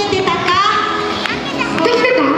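A woman talking through a microphone and PA speakers, with children's voices from the audience.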